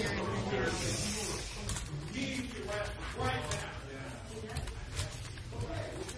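Indistinct, muffled voices of several people talking over a steady hiss of background noise.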